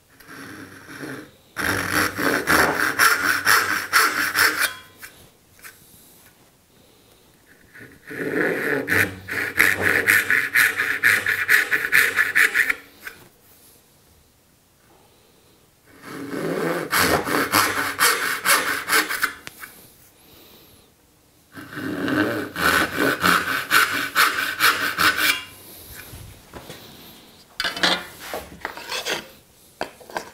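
Brass-backed dovetail saw cutting angled kerfs in a walnut board held in a vise: four runs of rapid strokes, a few seconds each, separated by short pauses, then a few lighter strokes near the end.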